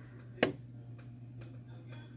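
Small handling clicks from working a ring and a plastic ring size adjuster: one sharp click about half a second in and a fainter one near the middle, over a low steady hum.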